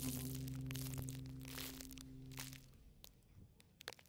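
The last held chord of a song for voice and acoustic guitar dying away, stopping about two and a half seconds in, with scattered faint clicks and crackles; it then falls to near silence.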